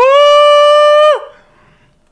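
A man singing one sustained high falsetto note through a compressor and limiter on the microphone, scooping up into it, holding it steady for about a second and sliding off the pitch at the end.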